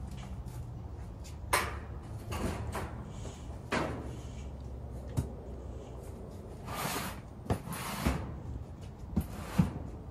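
Belongings being moved and sorted by hand: short spells of rustling and a few sharp knocks and clicks, on and off throughout.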